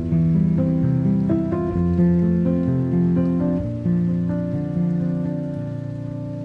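Slow classical piano music: soft chords and single notes struck every second or so, each one held and slowly fading.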